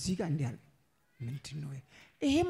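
Speech: a man speaking two short phrases into a handheld microphone, with a pause of about half a second between them.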